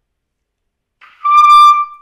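Trumpet playing a single held high note that comes in about a second in and stops near the end, blown with full-body breathing and the shoulders kept low.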